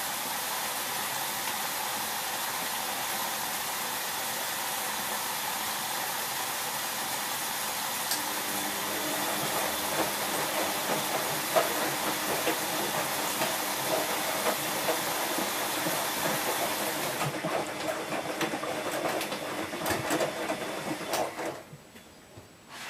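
Bosch Exxcel WFO2464 front-loading washing machine filling for its first rinse: a steady hiss of water running in through the fill valve and down the door. About a third of the way in, a low hum and sloshing join in as the drum turns. The hiss stops about three-quarters through, leaving splashing that dies away at the end.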